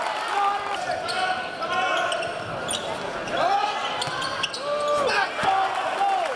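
Basketball game on a hardwood court: sneakers squeaking in short chirps as players run, and a basketball bouncing, over crowd voices in a large gym.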